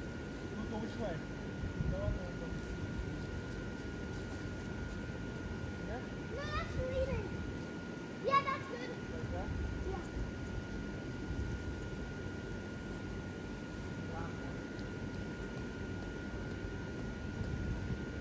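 Blower fans of inflated lawn inflatables running steadily, with a thin steady whine over a low rumble. A small child's short high voice sounds twice near the middle.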